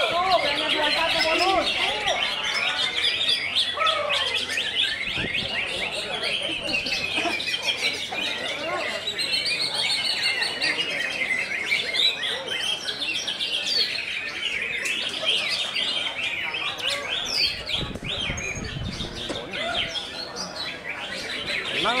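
Cucak ijo (green leafbird) singing a continuous, busy stream of high chirps and warbling phrases, without a break, with other birdsong mixed in.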